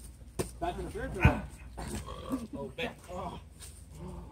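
Indistinct voices and calls of several men, with two sharp knocks; the louder one comes a little over a second in.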